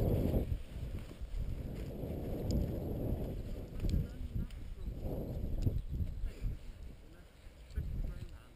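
Low, muffled rumbling noise, with indistinct voices.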